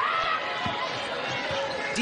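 A basketball dribbled on a hardwood court, low bounces about twice a second, with a few sneaker squeaks over the steady murmur of an arena crowd.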